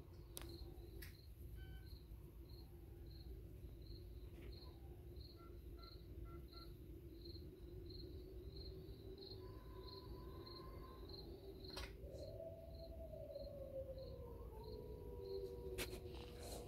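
Pet water fountain running quietly, with a low steady hum under a faint hiss. A short high chirp repeats evenly about three times a second throughout, with a few soft clicks and a long falling tone in the last few seconds.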